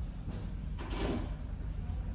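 Steady low rumble of background noise, with one short rushing, hissing sound about a second in that fades within half a second.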